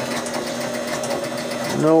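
The score motor of a 1976 Gottlieb Card Whiz electromechanical pinball machine running steadily right after power-up. It just keeps turning instead of stopping, a sign that the game is not completing its cycle.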